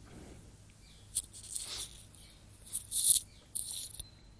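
Computer keyboard typing: a few short clattering runs of keystrokes with brief pauses between them.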